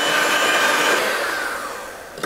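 Electric hand mixer beating egg yolks and sugar in a metal saucepan, its motor running with a steady whine that falls in pitch and fades from about a second in as it is switched off.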